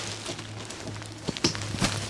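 Plastic wrapping on a mattress crinkling and rustling as it is handled, with a few light knocks in the second half, over a low steady hum.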